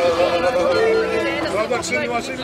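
Pontic lyras (kemenche), bowed folk fiddles, holding long steady notes that end a little over a second in, followed by people's voices talking.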